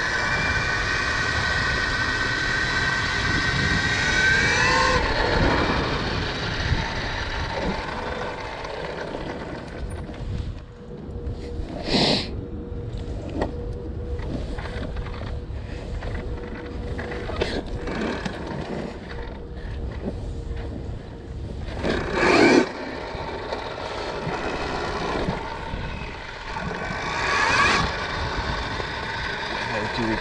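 Electric motor of a KTM Freeride E-XC enduro bike whining while riding, its pitch rising about four seconds in before dropping away, over a steady rumble of wind and tyres. Two short, louder bursts come about a third and about three quarters of the way through.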